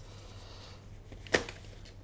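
Bumprider Connect V2 stroller being folded: a single sharp click from its frame a little past the middle, over a faint low hum.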